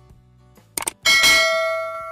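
Subscribe-button sound effect: a short mouse click just under a second in, then a bell-like notification ding that rings with several clear tones and slowly fades.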